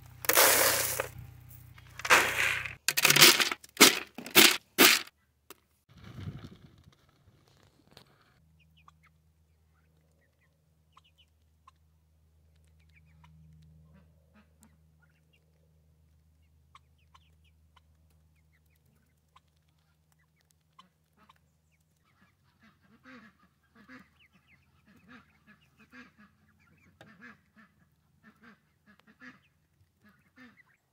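Dry feed pellets poured from a plastic scoop into a plastic tray, a loud rattle for about five seconds ending in a few separate shakes. Near the end, young ducks give short, soft quacks again and again.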